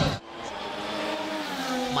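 Formula 1 car's turbocharged V6 hybrid engine heard from trackside, growing louder and rising slightly in pitch as the car comes closer.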